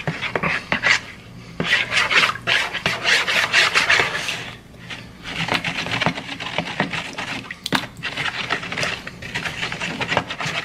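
Metal spoon stirring quickly in a plastic mixing bowl, rapid scraping and clattering strokes against the bowl's sides and bottom as pudding mix is beaten into milk to break up lumps. The strokes come in runs, with brief lulls about a second and a half in and near five seconds.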